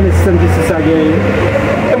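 A man speaking forcefully, over a steady low engine rumble.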